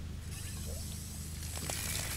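The metal handle of an outdoor water hydrant being worked: faint mechanical clicking and rattling over a steady low hum.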